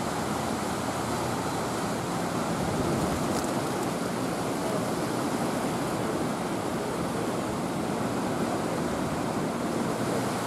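Steady rushing noise of turbulent water below the dam, even and unbroken throughout.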